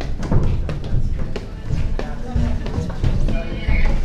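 Footsteps thudding and knocking unevenly on a wooden staircase, with people's voices in the background.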